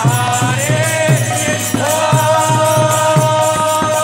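Devotional kirtan chanting: a singing voice leads the mantra, holding one long note through the second half, over a steady beat of drum strokes and jingling percussion.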